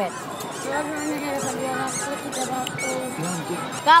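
Crowd voices and chatter in the background, with repeated high squeaky chirps above them.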